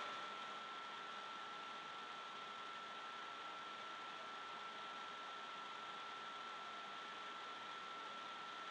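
Faint steady hiss with a thin, steady high whine: room tone or recording noise, with no handling sounds standing out.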